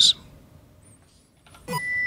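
A brief pause, then a retro video-game style jingle with steady synth tones starts about one and a half seconds in.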